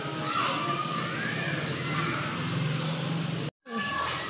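Faint murmur of distant voices over a steady low hum. The sound cuts out completely for a moment near the end.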